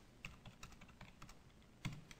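Computer keyboard being typed on: a quick run of faint keystrokes, then one louder click near the end.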